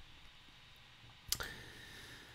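A single sharp computer click just past the middle of an otherwise quiet moment, followed by a faint steady high tone. It comes as the browser chart is switched to full-screen mode.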